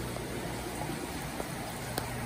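Steady rush of running water, typical of a large aquarium's water circulation.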